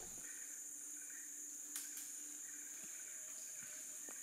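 Steady, high-pitched chorus of forest insects, with a single faint click a little under two seconds in.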